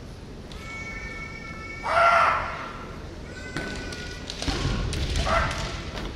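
Kendo fighters' kiai shouts: long, held, high-pitched cries, with a loud one about two seconds in and another just before the end. Low thuds of stamping feet or knocking bamboo shinai come in the second half.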